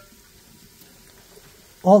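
Faint steady sizzle of food frying in bubbling oil in a cooking pot. A man's voice starts near the end.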